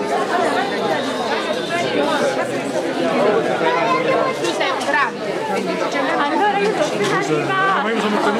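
Crowd chatter: many people talking at once in Italian, their voices overlapping.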